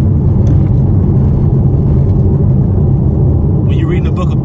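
Steady low road rumble inside a car cruising at highway speed, tyre and engine noise at an even level.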